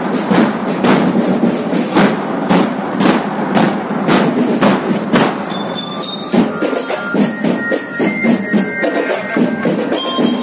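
Marching band drumline playing, bass drums giving strong hits about twice a second over busy percussion; about halfway through, bell lyres come in with a high ringing melody over the drums.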